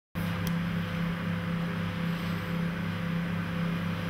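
A steady low hum with an even hiss, the background noise of the room, with one brief click about half a second in.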